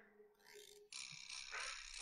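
Very quiet room tone, with a faint breathy hiss from about halfway in.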